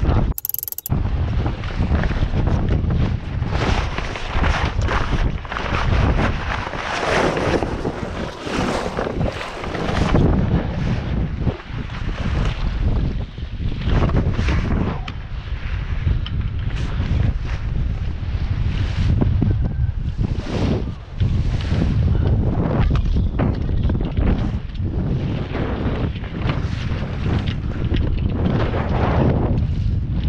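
Strong wind buffeting the microphone in uneven gusts, with a constant low rumble, over water washing along a small sailboat's hull.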